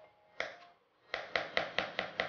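Chef's knife chopping red onion on a cutting board: one sharp knock about half a second in, then a quick run of knocks at about four to five a second.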